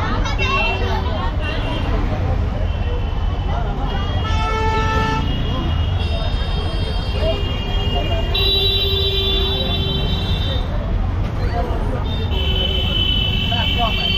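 Street traffic of auto-rickshaws and cars with a steady low rumble, and vehicle horns honking several times, the longest honks lasting about two seconds.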